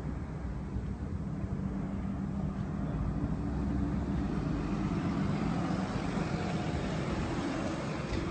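Engine of an approaching city bus, a steady low hum with street noise that grows louder over the first four seconds and then holds.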